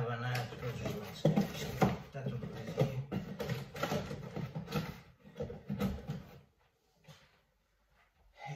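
Cardboard packing rustling, scraping and knocking as hands rummage in a large shipping box, with a man's low voice muttering over it. The sounds die away about six and a half seconds in.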